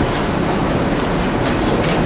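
Audience applauding: a steady, dense patter of many hands clapping.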